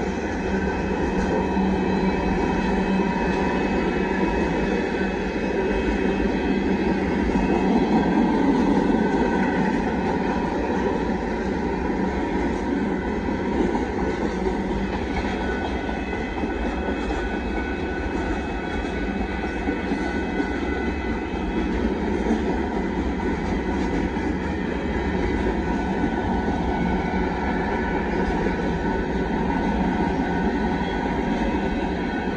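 Cars of a Union Pacific mixed freight train rolling past, a continuous rumble that swells slightly about eight seconds in, with thin steady high tones above it.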